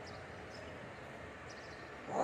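Low, steady background murmur of a large, crowded, echoing prayer hall, with a few faint high chirps, in a pause between loud chanted phrases over the loudspeakers.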